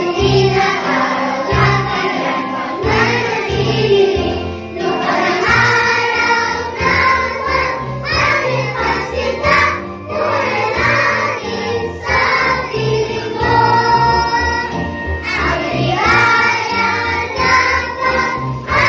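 A group of young children and adults singing together in unison, standing, over instrumental accompaniment with a steady bass line.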